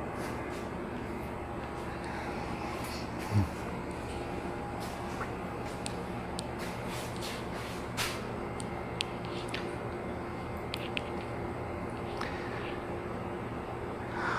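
Low, steady hum with a few faint clicks and one soft thump about three seconds in.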